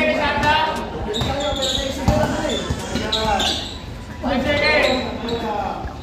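Basketball dribbled on a hard court: a few separate bounces, under the voices of players and onlookers calling out.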